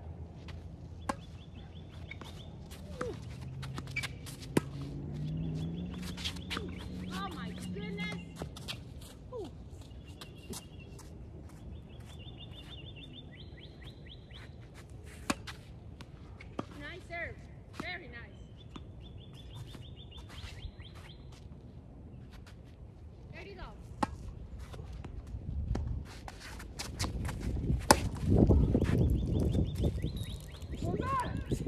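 Tennis rally on a hard court: sharp pops of racket strikes and ball bounces at irregular intervals. A repeated high chirping comes and goes, and a louder low noise builds near the end.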